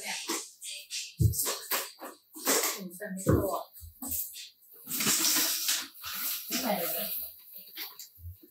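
A woman's voice talking, with a few low thumps and a stretch of hiss about five seconds in.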